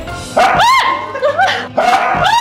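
A corgi gives one short, high-pitched bark about half a second in, over background music.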